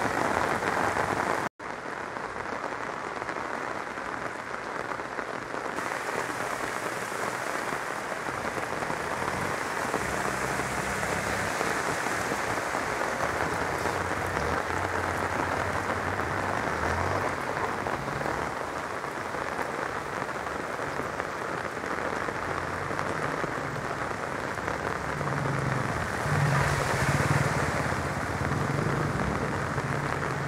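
Heavy rain pouring down on a flooded street, a dense steady hiss of rain and water, broken by a short dropout about a second and a half in. The engines of motorbikes and an auto-rickshaw driving through the water run underneath it at times, louder near the end.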